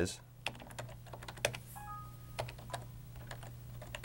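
Computer keyboard keys tapped in slow, irregular strokes, typing a search term, over a steady low hum.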